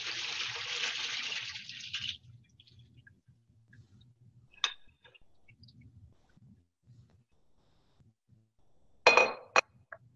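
Water pouring from a bowl of pomegranate seeds through a strainer into the sink, stopping about two seconds in. Then one short clink, and near the end two sharp clinks in quick succession.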